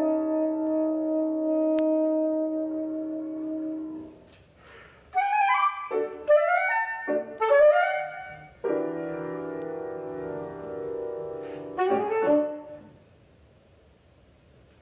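Soprano saxophone with piano playing the closing phrases of a classical piece. A long held chord fades out, quick rising and falling runs follow after a short gap, then a second held chord and a brief upward flourish that ends the music just before the end.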